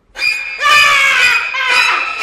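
A woman screaming loudly in fright, in several long high cries that begin just after the start.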